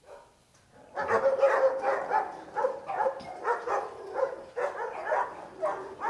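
Police dog barking in a rapid, unbroken run, about four barks a second, starting about a second in.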